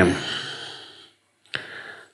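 A man breathes close to a headset microphone between sentences. A long exhale trails off, and about a second and a half in a mouth click is followed by a short in-breath.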